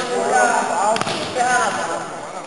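A futsal ball struck once with a sharp knock about a second in, echoing in a large sports hall, over players' calls.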